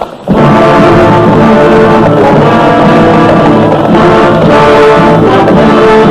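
Orchestral film score with brass, loud and dense, starting a moment in.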